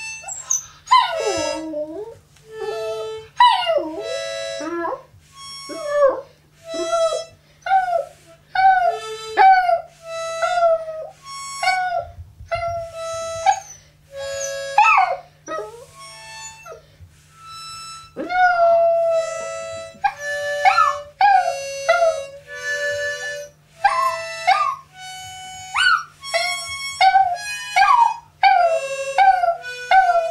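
A Chihuahua howling along with a harmonica. Her wavering howls and yips slide up and down in pitch over and between the harmonica's held notes.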